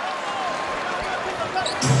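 Arena crowd noise with a basketball being dribbled on the hardwood court. Loud music starts near the end.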